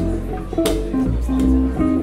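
Instrumental swing accompaniment between vocal lines: a plucked double bass playing a moving line of low notes, with an electric guitar strumming chords over it and one sharp strum near the middle.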